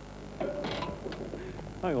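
Speech: a man's short exclamation about half a second in, then "hang on" near the end, over a steady low electrical hum.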